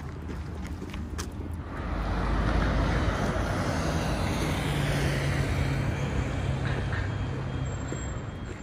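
Road traffic passing close by: vehicle noise swells about two seconds in and holds, with a steady low engine hum under it, easing off near the end.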